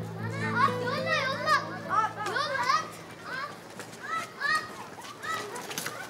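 A group of children shouting and calling out to each other as they play in the street, many high young voices overlapping.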